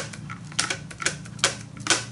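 A handful of sharp, irregular clicks and taps, about five in two seconds, from painting supplies being handled on a craft table, over a steady low hum.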